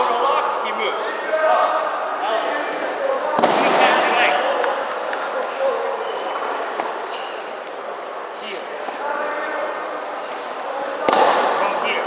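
Voices talking across a large hall, with two loud thumps, one about three seconds in and one near the end.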